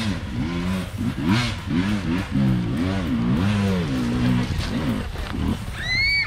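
Trail-bike engine revved again and again, its pitch rising and falling about twice a second, as the bike is worked up a steep dirt hill climb.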